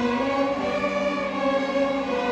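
Student string orchestra of violins, cellos and double bass playing long held notes, the chord changing about half a second in.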